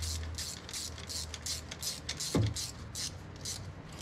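Ratchet wrench with a 12 mm socket clicking through quick, even strokes, about three a second, as a fuel rail bolt is run in.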